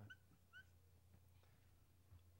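Two faint, brief squeaks of a dry-erase marker on a whiteboard, both within the first second, over a low steady room hum; otherwise near silence.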